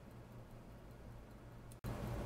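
Faint room tone with a steady low hum; nothing else is heard. It cuts off abruptly near the end.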